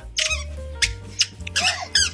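A toddler's squeaker shoes giving a few short, sharp squeaks as he steps about, over background music with a low bass line.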